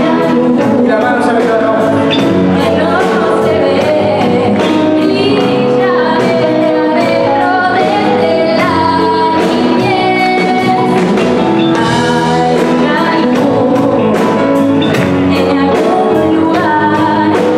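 A woman singing a pop-rock song through a microphone with a live band of electric guitars, bass guitar, drums and keyboard, playing over a steady drum beat.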